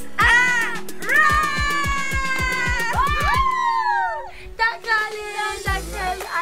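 Background music with a fast, even beat and long sliding notes that bend and fall in pitch. It thins out after about four seconds.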